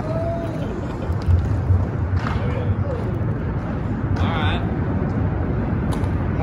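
A few brief, faint snatches of people's voices over a steady low rumble.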